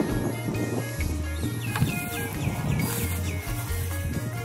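Background music: a melody with short, downward-sliding high notes over a bass line that changes note about every half second.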